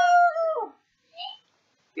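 A man's voice holding one high, steady note, a mock animal-like call, that falls away under a second in; a brief faint sound follows.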